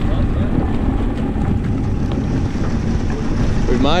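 Two-stroke 40 hp Yamaha Enduro outboard motor running steadily on a small boat under way, with wind buffeting the microphone.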